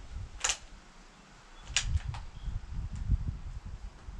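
A few short, sharp clicks: one about half a second in, then two close together near the two-second mark. They sound over an uneven low rumble of handling or wind noise while a rifle is held aimed, and no shot is fired.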